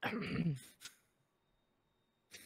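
A person briefly clearing their throat, a single short rasp lasting about half a second.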